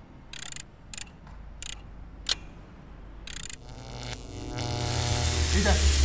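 Sci-fi time machine sound effect as the machine is started: a few short clicks and whirs, one a sharp click, then a low electric hum that builds steadily louder as the machine powers up. A startled man's "what's this?" comes right at the end.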